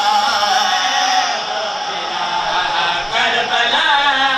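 A male zakir chanting a devotional verse in a drawn-out, wavering melody. He holds one note through the first second, and a new sung line begins near the end.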